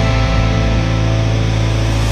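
Symphonic metal music with distorted electric guitar recorded through an EVH 5150 III LBX all-tube amp: a sustained chord held steadily over low bass, with no drum hits.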